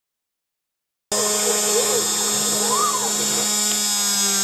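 Silence, then about a second in a CNC router starts up abruptly, drilling tuner holes in a cigar box guitar headstock. Its spindle gives a steady high whine over a low hum, with tones that glide up and down as the machine moves.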